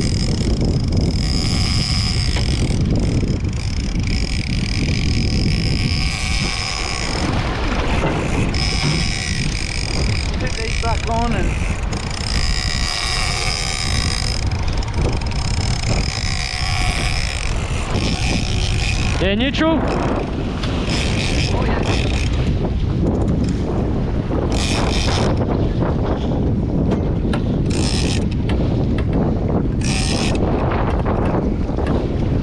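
Heavy wind buffeting on the microphone over sea wash. Through it comes a steady high whine from a game-fishing reel, in stretches of a few seconds with short breaks, while the reel is under load from a hooked yellowfin tuna.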